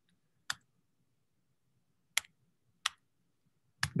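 Three separate keystrokes on a computer keyboard, each a short sharp click, spaced irregularly about half a second in and twice more in the second half.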